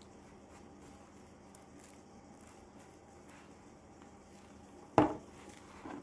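Faint room tone while ground ginger is shaken from a spice jar over a pot of meat, then one sharp click about five seconds in from the jar being handled.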